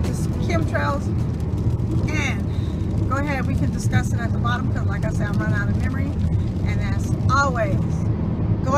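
A woman talking inside a car cabin over the car's steady low rumble.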